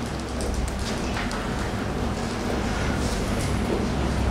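A steady low hum with an even faint hiss above it.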